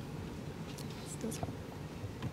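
Quiet room tone with faint murmured voices and a few small clicks.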